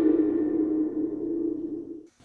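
A single ringing hit from a horror soundtrack: a steady low tone that sustains and slowly fades, its bright edge dying away first, then stops near the end.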